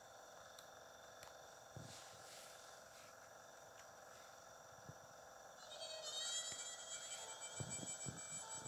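Faint menu background audio from a portable DVD player's small speaker, with a few soft clicks. About six seconds in, it grows louder with a high, chittering pattern as the next menu loads.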